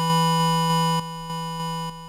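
Syntorial software synthesizer playing one held note from a random patch. A low, square-ish oscillator sits under a second oscillator pitched far higher, about two octaves and a fifth up. The volume is chopped several times a second and jumps between uneven levels, the mark of a square, random sample-and-hold LFO on the amplitude.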